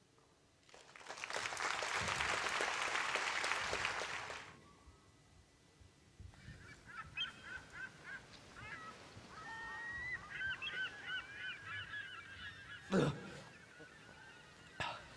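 Audience applauding for a few seconds. Then gulls crying over and over, a sound effect that sets a scene at sea, with a single sharp thump near the end.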